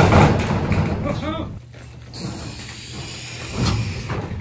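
Metal-framed livestock shelter being heaved by hand: a heavy thump and clattering, scraping shift of the frame at the start, then further creaks and knocks as it settles, with a man's brief straining voice.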